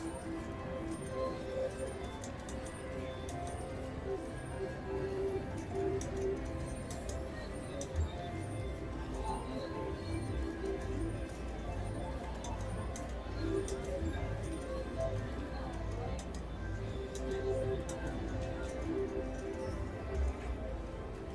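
Casino floor din of electronic slot machine jingles, over which a mechanical three-reel slot machine clicks and ticks as it is played: reels spinning and stopping, and the credit meter counting up small wins.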